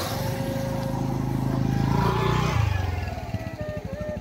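Motorcycle engine passing close by: it grows louder, drops in pitch about two and a half seconds in, then fades away.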